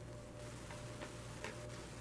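A few faint, light ticks and taps as a tarot card is handled and set into a small wire card stand on a table, over a steady low hum.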